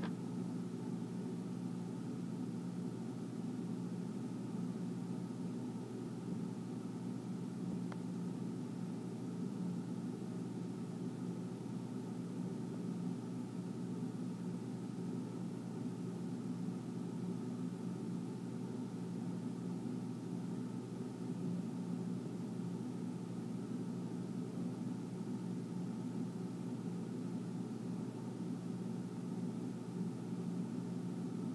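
A steady low hum with a faint hiss, unchanging throughout.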